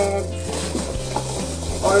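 Plastic packaging and a shopping bag rustling and crinkling as groceries are handled, over steady background music.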